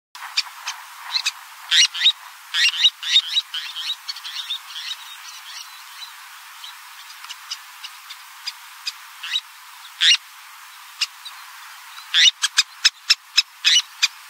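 Terns calling: short, high chirps repeated in bunches, thickest in the first few seconds and again near the end, with scattered single calls between, over a steady hiss.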